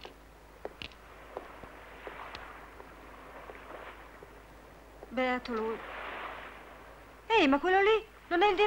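Two loud wordless vocal calls, sliding in pitch: a shorter one about five seconds in and a louder one near the end, over faint scattered ticks and a light hiss.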